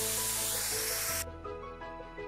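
Mint and coriander leaves sizzling as they sauté in oil in a pan, now well wilted; the sizzle cuts off suddenly a little over a second in. Soft background music with steady held notes plays throughout.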